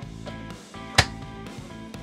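Overhead cabinet door on soft gas struts in a Morelo Palace motorhome, shutting with a single solid click about a second in, over background music.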